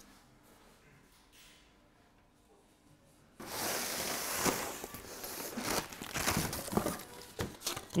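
Near silence for about three seconds, then sudden, irregular rustling and crinkling of packaging as a guitar is pulled out of its cardboard box and wrapping.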